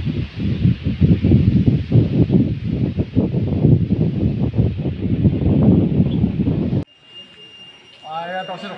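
Wind buffeting the microphone: a loud, gusty low rumble that cuts off suddenly about seven seconds in. A quieter stretch with a faint steady high tone follows.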